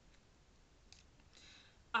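Faint handling sounds as a wooden log decoration is moved about: a soft click about a second in and a brief rustle shortly after.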